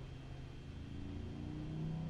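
Faint low motor drone that rises slowly in pitch and gets louder over the second half, over a steady low hum.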